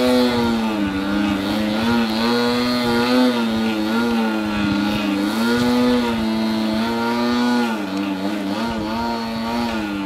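Engine and propeller of a Sbach aerobatic RC plane in flight: one steady buzzing note whose pitch keeps dipping, rising and holding level in turn as it manoeuvres.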